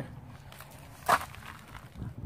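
A quiet pause with faint handling noise and one short, soft scuff about a second in.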